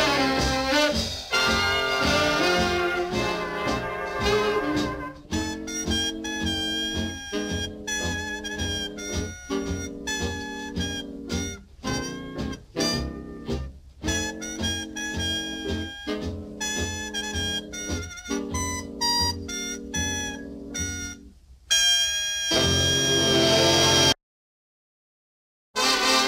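Instrumental background music: a full passage of held notes, then from about five seconds in a sparser run of separate notes with brief gaps. A louder, fuller passage comes near the end and stops abruptly.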